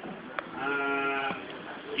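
A man's voice holding one drawn-out vowel, flat in pitch, for under a second, heard through a microphone, with a sharp click just before it.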